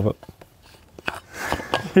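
After a short quiet pause, a couple of light clicks, then a man's soft, breathy laugh near the end.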